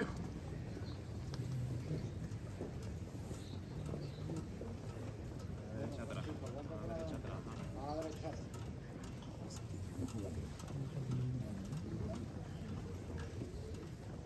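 Low murmur of a packed crowd, with soft shuffling steps of the bearers carrying the procession float slowly forward. A few voices stand out about six to eight seconds in.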